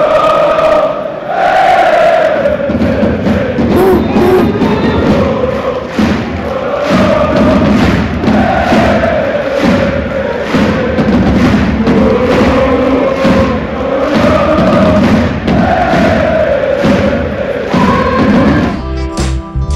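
Loud stadium crowd of PSG ultras singing a chant in unison to a familiar tune, with a steady beat keeping time.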